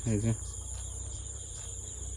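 Insects chirring steadily at one high, even pitch, with a brief voice sound right at the start.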